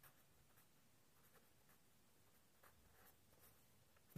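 Faint, short scratches of a marker pen tip on paper as a word is written by hand, in scattered strokes.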